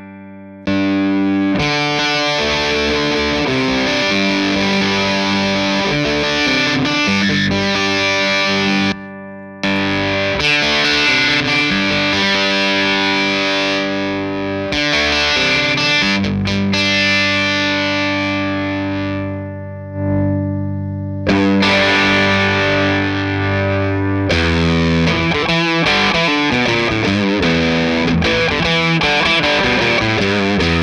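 Electric guitar (Fender Stratocaster) played through a DOD Carcosa fuzz pedal into a valve amp: thick, heavily fuzzed riffs and chords. The playing starts about a second in and stops briefly twice, around 9 s and 20 s in.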